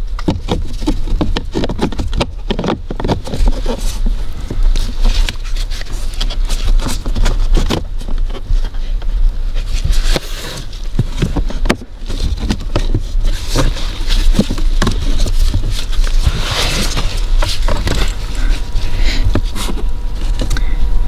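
Hard plastic cabin-filter cover clicking, knocking and scraping against the dashboard trim as it is worked up into its locating slots, in irregular bursts over a steady low hum.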